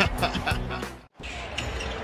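Background music with a beat fades out about a second in. After a brief silent gap, arena crowd noise follows, with a basketball being dribbled on a hardwood court.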